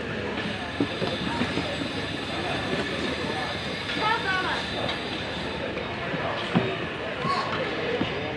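Steady din of a busy food market crowd, with many voices talking at once and no one voice standing out. Two short knocks sound, one about a second in and one near the end.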